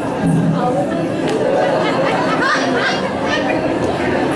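Overlapping chatter of many audience voices in a large hall, steady throughout, with no single voice standing out.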